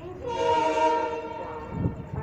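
Locomotive horn of the approaching New Jalpaiguri–Howrah Shatabdi Express: one steady blast about a second and a half long. A brief low thump follows near the end.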